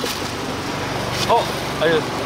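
Steady outdoor street noise with a low mechanical hum, as of traffic or an engine running. A short spoken exclamation cuts in about a second in.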